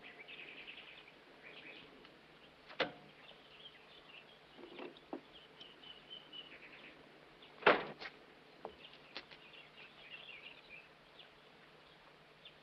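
Faint bird chirping in the background, broken by a few sharp clicks or knocks, the loudest about eight seconds in.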